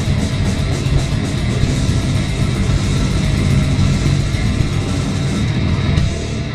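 Grindcore band playing live: distorted electric guitar, bass guitar and drums in a loud, dense wall of sound.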